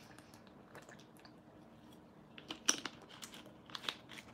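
A man drinking from a plastic soda bottle: faint swallows and small clicks and crinkles of the plastic, with one sharper click a little before three seconds in.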